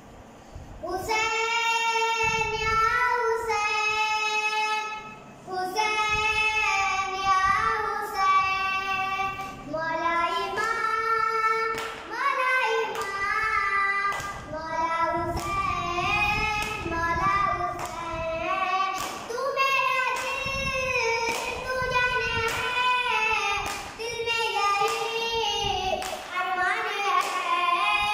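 A boy singing a noha, a Shia Muharram lament, unaccompanied, phrase after phrase. Sharp slaps of his hand on his chest (matam) keep time with the singing, clearest in the second half.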